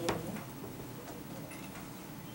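A single sharp click at the very start, then quiet room tone with a few faint ticks.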